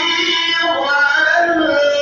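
Voices singing a melodic Islamic devotional chant, with long held, wavering notes.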